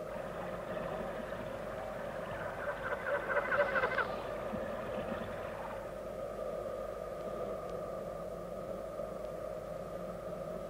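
Steady electronic hum of a TV series' underwater ambience effect, with a burst of rapid clicks that swells about two and a half seconds in and dies away by about five seconds.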